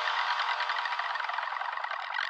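Goa psy trance synthesizer passage: the bass drops out shortly after the start, leaving a dense, busy mid-to-high synth texture.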